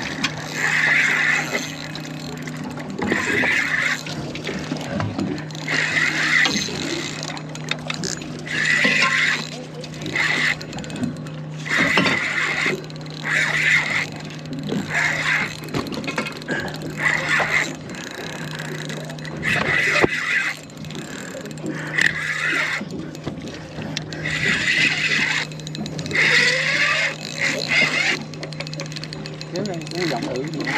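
Voices talking on and off over a steady low hum.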